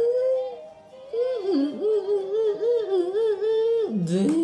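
A young girl singing a yodel. A short held note is followed by a brief pause about half a second in, then a phrase of quick flips between low and high notes.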